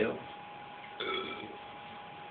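A man's short burp about a second in, over a faint steady tone in the background.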